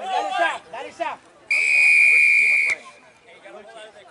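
A rugby referee's whistle blown once, one steady, high, loud blast lasting just over a second, stopping play at the tackle. Players shout just before it.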